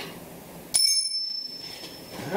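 A single bright bell-like ding, starting suddenly about three-quarters of a second in and ringing out for about a second as it fades.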